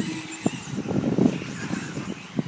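Radio-controlled off-road race cars running on a dirt track, with the high whine of their small motors over rumble and knocks from tyres and suspension.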